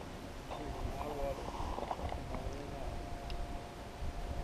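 Faint, distant talking over quiet outdoor background noise, with a few light ticks.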